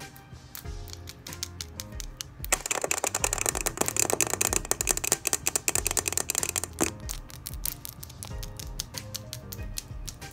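Long acrylic nails clicking and tapping rapidly close to the microphone, densest in the middle stretch, over quiet background music.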